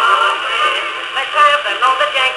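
A 1903 Standard Phonograph Company disc record played on a 1921 Victrola VV-VI acoustic phonograph: a male singer's ragtime song, thin and narrow in tone with no bass.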